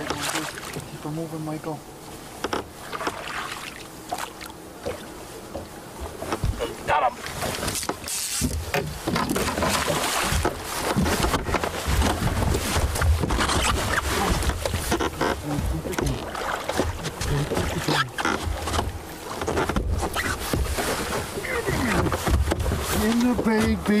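A musky thrashing and splashing in the water at the side of the boat as it is brought in and scooped into a landing net, with heavy, irregular splashing from about eight seconds in.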